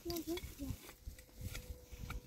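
A person's voice speaking briefly in the first second, followed by a few light knocks and rustles from people working close over stony ground.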